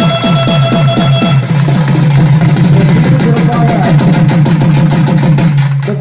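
Naiyandi melam folk band playing: a nadaswaram holds a long reedy note that stops about a second and a half in, over fast, steady thavil drumming that carries on alone, getting busier.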